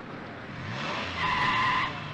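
A car engine revs up, then the tyres squeal loudly for most of a second as the car pulls away fast.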